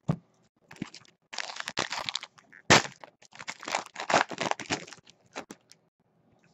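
Foil trading-card pack torn open and its cards handled: a run of crinkling, crackling snaps, with a sharp crack a little under three seconds in.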